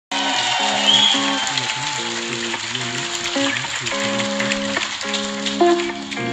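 Live band playing the instrumental intro to a song: held chords changing about every half second over a moving bass line, with a steady high hiss over it.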